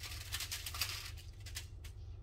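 A lemon squeezed by hand over salmon on aluminium foil: lemon juice pattering onto the foil with a crackly rustle.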